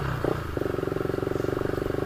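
Motorcycle engine running at low speed, a steady, evenly pulsing note, dropping in level at the very start and then holding steady.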